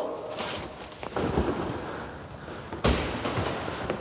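All-weather floor mats being pulled out of a cardboard box: scraping and rustling of the mats against the cardboard, a couple of light knocks, and one sharper thump about three seconds in.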